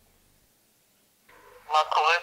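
Near silence, then near the end a high-pitched voice starts talking, thin and heard over a phone's speaker.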